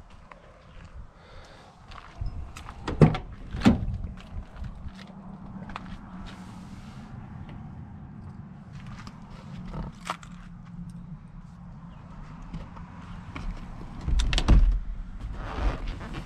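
Handling sounds of a pickup's cab door being opened: two sharp latch clicks a few seconds in, small knocks and rustles, and a faint low steady hum. A heavier thump comes near the end as the seat is tipped forward to reach behind it.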